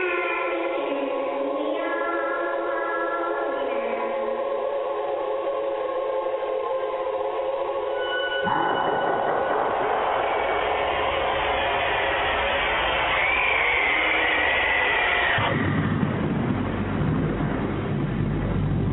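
Eerie choral music with long held voices, which cuts off about halfway through into a dense rushing noise with a brief wavering high tone, then a low rumble near the end.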